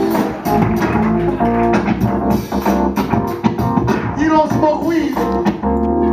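Live band music with electric guitar and bass guitar playing.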